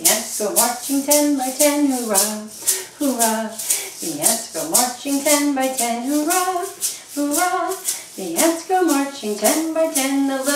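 A woman singing a children's marching song, keeping the beat with a small hand-held shaker that is shaken steadily throughout.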